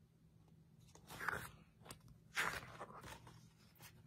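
Pages of a paperback picture book being turned and handled: two short paper rustles, about a second in and again about two and a half seconds in, with a few soft clicks.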